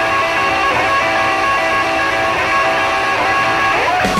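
Electric guitar playing the opening of a live rock song, held notes with slides between them and a rising slide near the end, with little bass or drums under it.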